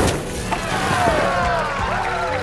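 Hot water dumped into trash cans of liquid nitrogen: a sudden splash and a rushing hiss as the nitrogen boils off violently into a cloud of mist, with many voices of a crowd rising over it.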